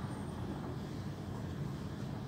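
Steady low rumble of room background noise.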